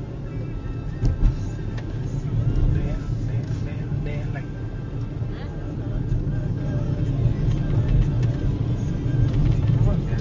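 Steady low rumble of a car's engine and tyres heard inside the cabin while driving at about 30 mph, with a short knock about a second in.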